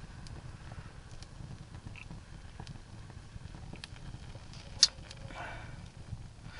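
Small twig campfire crackling faintly with scattered sharp pops, one louder snap nearly five seconds in, over a low steady rumble.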